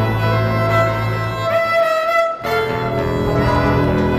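Live acoustic band playing a medley of mainly Russian tunes, with the violin leading over acoustic guitars and double bass. A sliding rising note leads into a brief break about two and a half seconds in, and then the band comes back in.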